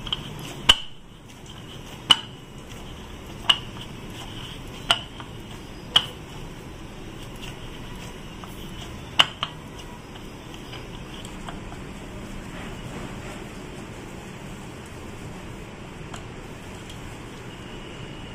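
Stainless steel plate clinking as dough is kneaded and pressed on it by hand: sharp clinks, the first four about a second and a half apart, six in the first ten seconds and none after, over a steady low hiss.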